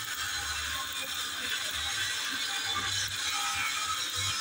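Stick (arc) welding in progress: the electrode arc crackles steadily as a vertical bead is run on steel.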